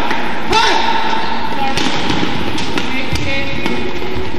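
Badminton rally: sharp strikes of racket strings on the shuttlecock, several in the second half, over steady arena crowd noise. A voice calls out once about half a second in.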